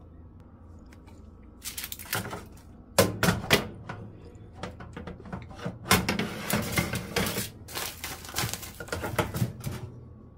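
A foil-lined metal baking tray clattering and scraping, with foil crinkling, as it is slid onto the rack of a Dash air-fryer toaster oven and the oven door is shut. A few sharp knocks come about three seconds in, and a longer run of clatter fills the second half.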